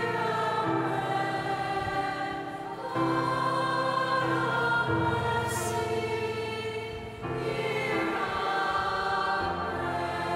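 Choir singing a slow sung response between the prayers of the faithful, over held accompanying chords that change every two seconds or so.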